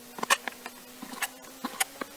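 Long slicing knife drawn through raw salmon and meeting a plastic cutting board, giving irregular sharp clicks and ticks several times a second. A faint steady hum runs underneath.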